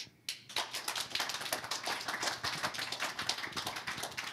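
Audience applauding, a dense, even patter of many hands clapping that starts a moment in.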